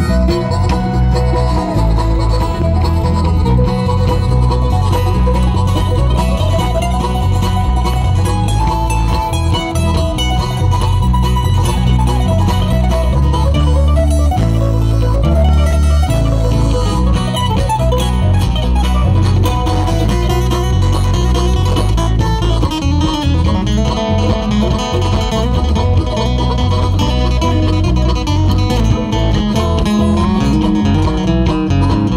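Live bluegrass-style string band playing an instrumental break: mandolin and acoustic guitar over a walking bass line, with harmonica at the start.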